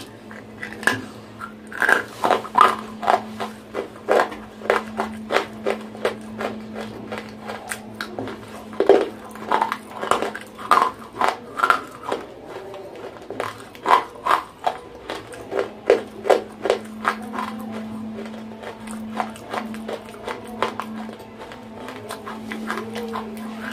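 Close-miked crunching and chewing of dry edible clay chunks: quick runs of sharp crunches in bursts, with short lulls between, over a steady low hum.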